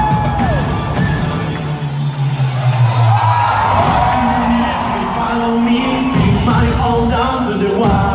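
A pop song performed live in a large arena, with a singer and backing band, heard through a phone microphone from the stands, and the crowd whooping along.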